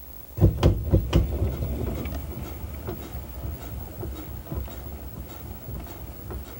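Upright player piano's mechanism knocking and clattering: a few loud wooden knocks in the first second, then a steady run of lighter clicks over a low rumble, with no tune yet.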